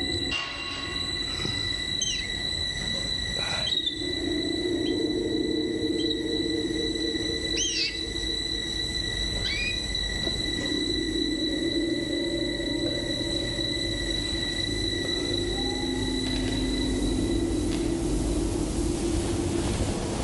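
Eerie horror-film underscore: a low droning hum beneath high, steady ringing tones, with a few short sliding squeals in the first half.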